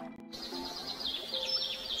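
Birds chirping: a quick run of short, high, falling chirps that starts about a third of a second in, over soft held music.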